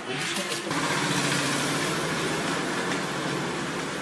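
A steady mechanical running noise with a low hum, like a machine or motor, sets in under a second in and holds level.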